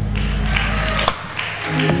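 Live church band playing under the preaching: held bass and keyboard chords with regular drum and cymbal hits.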